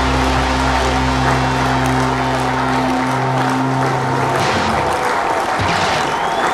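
A rock band's last held chord, bass and guitars ringing out and dying away about four seconds in, while the audience applauds.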